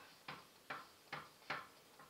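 A small wooden mallet tapping on a pine plank: a run of evenly spaced wooden knocks, about two and a half a second.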